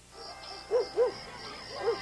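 A few short hooting tones, each rising and then falling in pitch: two close together about a second in and one more near the end, over a low steady background.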